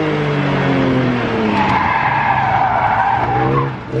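Inside the cabin of an E46 BMW M3, its S54 inline-six revs drop while the tyres squeal for about two seconds under hard cornering. The engine revs rise again near the end.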